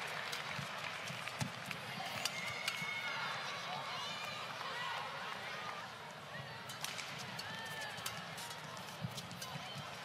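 Badminton rally: sharp cracks of rackets striking the shuttlecock and short squeaks of players' shoes on the court mat, over steady arena crowd noise.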